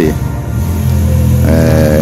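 A motor vehicle engine on the street below, a steady low drone that sets in about half a second in, with a level pitched hum joining near the end.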